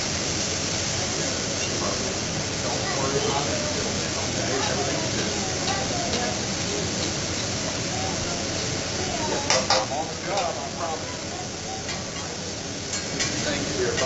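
Food sizzling on a hot teppanyaki griddle, a steady hiss as steam rises off the plate, with a few sharp clicks of metal spatulas on the griddle about two-thirds of the way in and again near the end.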